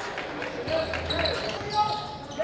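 Basketball game play on an indoor hardwood court: the ball bouncing and players' shoes hitting the floor in irregular short knocks, with voices in the gym.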